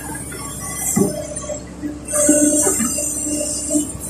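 Kobelco SK140 excavator heard from inside the cab: its Mitsubishi D04FR diesel engine and hydraulics are working under load as the bucket digs and swings, with a knock about a second in.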